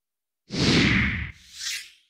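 Whoosh sound effect of a broadcast transition graphic: a loud swoosh with a deep rumble starting about half a second in, followed by a shorter, higher swish.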